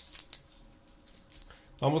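Soft crinkling of a thin plastic protective wrap being pulled off a smartphone, a few light rustles mostly in the first half second, then handling quiet.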